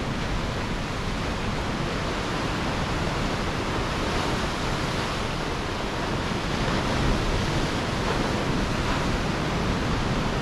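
Ocean surf breaking along the shore: a steady, even wash of noise with no single wave standing out, with some wind on the microphone.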